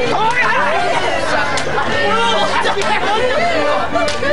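Several people's voices talking and calling out at once, overlapping throughout, with a few faint sharp clicks among them.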